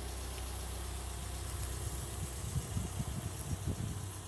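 A vehicle engine idling with a steady low hum. Irregular low thumps come in over the second half.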